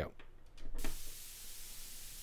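White noise from a modular synth's noise generator fed through a passive fixed high-pass filter (Bastl Propust), coming in abruptly about a second in as a thin, quiet, high hiss with the low end filtered out. It follows a couple of soft clicks.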